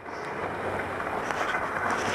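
Skis sliding over groomed snow, a steady scraping hiss, mixed with wind on the helmet camera's microphone.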